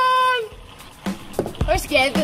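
A voice through a toy megaphone holds one drawn-out note for about half a second, then cuts off, leaving quieter talk and small knocks.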